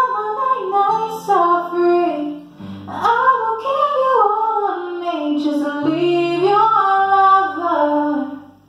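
A woman singing long, sliding notes over acoustic guitar, with the low guitar notes held and changing a few times underneath.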